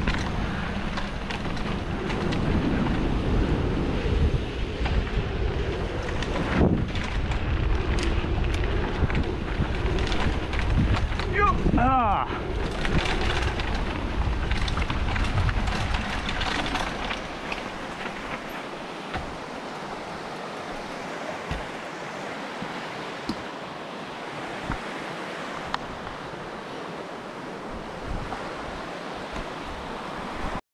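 Mountain bike descending a dirt forest trail: wind buffeting the camera microphone and tyres rolling over dirt, with a brief wavering whine about twelve seconds in. After about seventeen seconds the rumble drops away as the bike slows, and the steady rush of a fast-flowing creek carries on to the end.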